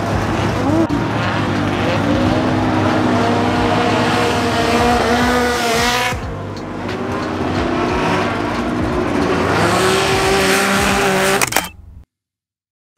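Lexus RC F drift car's engine revving hard as it slides through a corner, its pitch rising and falling over tyre squeal. The sound dips briefly about halfway and cuts off suddenly just before the end.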